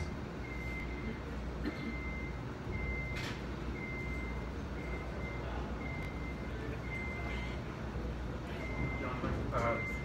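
A high-pitched electronic beep repeating about once a second, each beep short and the spacing a little uneven, over a steady low room hum.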